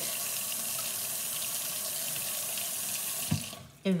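Kitchen faucet running steadily into a stainless-steel sink. A little after three seconds in there is a single knock, and the flow dies away as the tap is shut off.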